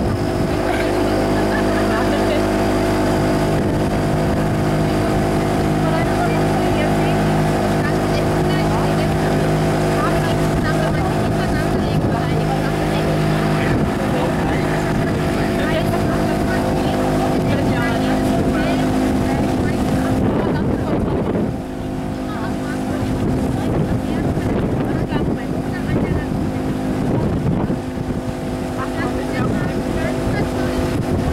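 Small motorboat's engine running steadily at cruising speed, with water rushing along the hull and wind on the microphone. The engine note dips and changes pitch about two-thirds of the way through, then carries on.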